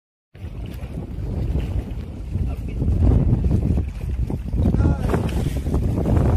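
Wind buffeting the microphone in a heavy, uneven rumble, over choppy river water.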